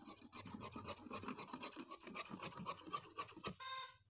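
Tailor's scissors snipping through cotton dress fabric in a quick, irregular run of short, faint cuts along a chalk line. A brief tone sounds near the end.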